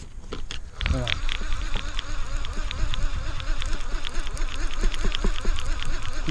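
Fishing reel's drag buzzing with a fast, even ticking as a large sturgeon runs and pulls line off the spool. It starts about a second in.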